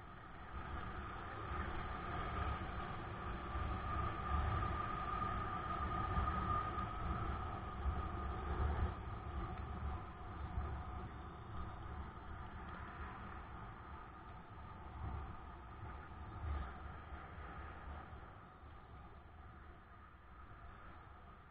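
Road traffic on a city street, heard while riding past queued cars and a bus: engines running, with gusty low rumble and a steady whine, loudest a few seconds in and easing off toward the end.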